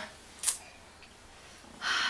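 A pause in a woman's talking: a single short, sharp click about half a second in, then an audible breath in near the end as she gets ready to speak again.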